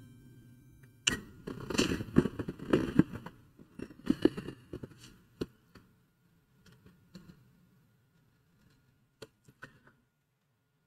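Paintbrush working acrylic paint onto a painting board: a run of short, scratchy strokes about a second in that thin out after about five seconds. A few light clicks come near the end.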